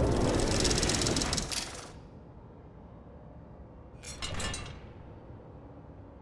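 Produced sound effects for an animated title graphic: a loud rattling whoosh for about two seconds that falls away to a low rumble, then a shorter second whoosh about four seconds in.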